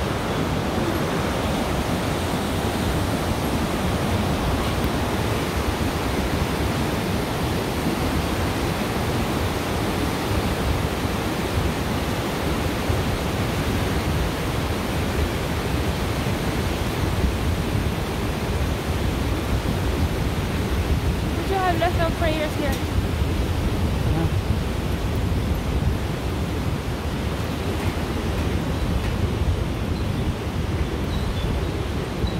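Steady rushing of a mountain river below a suspension bridge, a constant roar of water with no pauses. A short warbling call cuts through it briefly about three-quarters of the way through.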